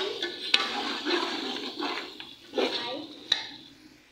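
Metal ladle stirring meat curry in a large aluminium pot: repeated wet scraping strokes through the bubbling gravy, with two sharp clinks of the ladle against the pot, one about half a second in and one about three seconds in.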